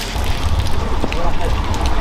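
Wind buffeting the microphone: a heavy, rough low rumble with faint voices underneath.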